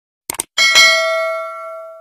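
A quick double mouse-click sound effect, then a bright bell ding that rings on in several tones and fades away over about a second and a half: the click-and-ring of a YouTube notification bell being switched on.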